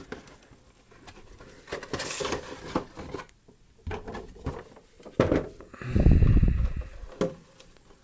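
Cardboard box being opened and its contents lifted out by hand: scraping and rustling of cardboard with scattered taps and knocks, and a loud low rumble of handling about six seconds in.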